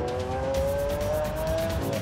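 Background music with a fast ticking beat that enters about half a second in, over a car's drive note rising slowly in pitch as it accelerates.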